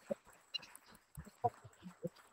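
A quiet pause between speakers, broken by a few faint short clicks and brief murmurs of voice.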